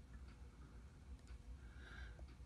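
Near silence: a few faint light clicks from steel tweezers working in an open Seiko 6105 automatic movement, over a low room hum.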